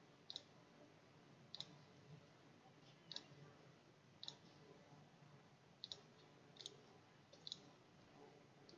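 Computer mouse button clicking, about seven faint clicks spaced unevenly, some heard as a quick double tick, over near-silent room tone.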